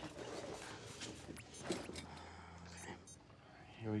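Quiet room noise with a few faint small clicks from a handheld video camera being worked to rewind its footage.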